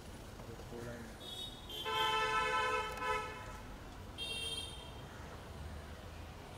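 A vehicle horn honking twice at a steady pitch: a held blast of a little over a second about two seconds in, then a shorter toot about four seconds in.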